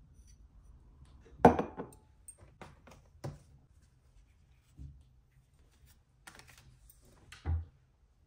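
Products being handled and set down on a kitchen countertop: a sharp knock of a can set down about one and a half seconds in, a few lighter clicks and rustles of packaging, and a dull thump near the end.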